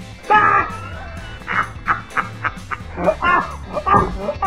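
Background music with loud animal calls laid over it: a drawn-out, wavering call about a third of a second in, then a quick run of short, dog-like yips and a few more calls near the end.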